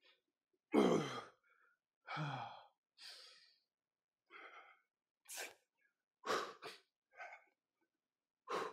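A man breathing hard under exertion: about eight short, forceful exhales. The first two are voiced sighs that fall in pitch, and the later ones are quicker, breathy puffs.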